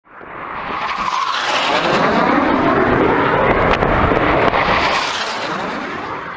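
A fast aircraft passing low overhead: a loud rush of engine and air noise that swells in over the first second, holds, and eases off toward the end.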